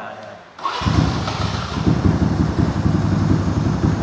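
Yamaha Exciter 4-speed motorcycle's fuel-injected single-cylinder four-stroke engine starting, catching abruptly less than a second in. It then idles with an even, fast pulse.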